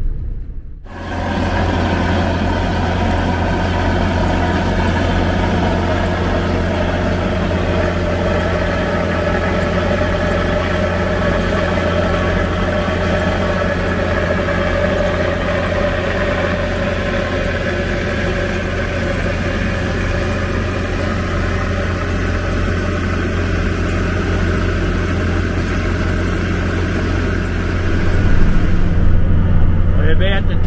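A vehicle engine running steadily at constant speed, a low, even drone with no revving. Near the end it gets louder and changes tone.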